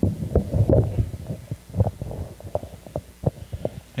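Handheld microphone being lifted off its stand and handled, giving a run of irregular low thumps and short knocks.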